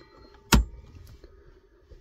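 A cigarette-lighter plug on an antenna control cable being pushed into a car's 12 V socket: one sharp click about half a second in.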